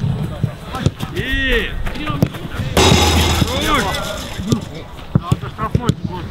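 Footballs struck hard again and again in a shooting drill, each kick a sharp thud, with players' wordless shouts and calls between them. A louder, noisier stretch comes about three seconds in.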